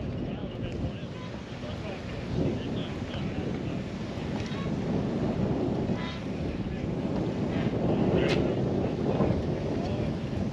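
Wind buffeting the microphone: an uneven low rumble that swells near the end, with one sharp click about eight seconds in.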